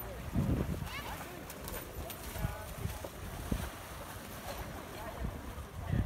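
Water splashing as people wade through a shallow pool, over scattered voices and shouts, with wind buffeting the microphone. The loudest gust or splash comes about half a second in.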